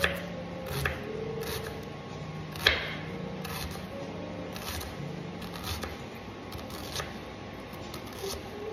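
Kitchen knife dicing an onion on a wooden chopping board: irregular knocks of the blade on the board, about one a second, the loudest near the middle.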